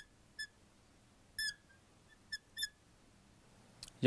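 Marker squeaking against a glass lightboard in short strokes as a word is written: about five brief, high squeaks with gaps between them.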